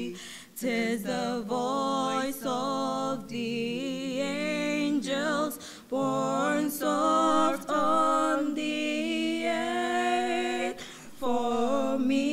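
A hymn sung a cappella by young voices through microphones, held notes wavering in phrases with short pauses for breath between them.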